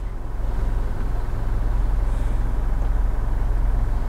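Steady low rumble of a stationary SUV running, heard from inside its cabin, with no pitch change or revving.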